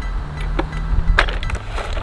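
Cast aluminium ingots knocking and clinking in a plastic tub as the loaded tub is lifted and set down on a bathroom scale: a few sharp knocks, the loudest about a second in, over a steady low rumble.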